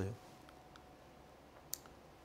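A single short, sharp click about three-quarters of the way through, from the button of a handheld presentation remote pressed to advance the slide, over quiet room tone with a couple of faint ticks before it.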